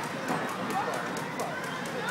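Children's voices and background chatter in a busy indoor play area, with light rapid ticks or taps in the background.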